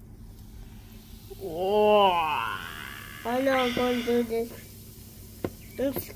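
A person's wordless vocal exclamations: a drawn-out 'oooh' that rises and then falls in pitch about two seconds in, followed by a second held, wavering call. A small click comes near the end.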